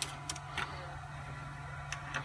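Steady low hum with a thin high tone over it, broken by a few light clicks and taps from handling: one at the start, two soon after, and one near the end.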